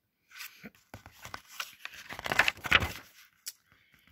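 A page of a picture book being turned by hand: paper rustling and sliding for about three seconds, loudest shortly before it stops.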